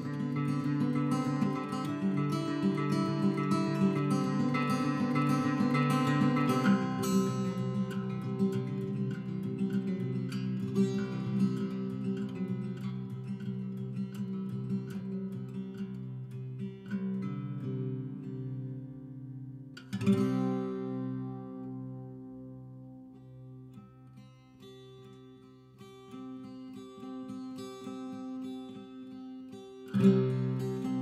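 Solo acoustic guitar played fingerstyle in an instrumental passage, with no voice. Dense picked notes fill the first half. About two-thirds of the way through a single sharply struck chord rings out and fades, the playing stays quiet for a while, then builds again to a loud attack at the very end.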